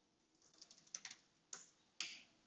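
Faint typing on a computer keyboard: a quick run of keystrokes about half a second in, then a single keystroke about a second later.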